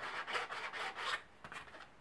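Hand file rasping along the edge of a 3D-printed PETG bracket in quick back-and-forth strokes, about four a second, to take down a ridge; the strokes stop a little over a second in.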